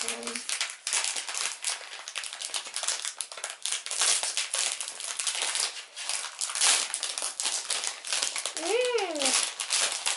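Plastic snack wrapper crinkling and crackling as it is squeezed and torn open by hand, with a short voiced sound near the end.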